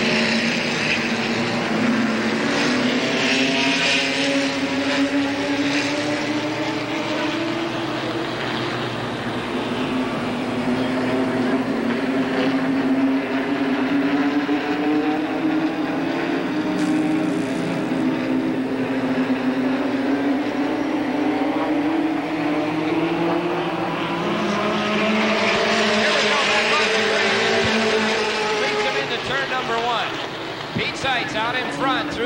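A pack of late-model stock cars running their V8 engines at a steady caution pace, the drone slowly rising and falling in pitch as the cars go round. A rush of noise comes as the cars pass close, about three seconds in and again near the end.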